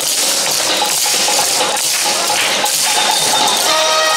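Many wooden naruko clappers clacking together as a group of yosakoi dancers shakes them, over loud dance music. Near the end the music's sustained tones come to the fore.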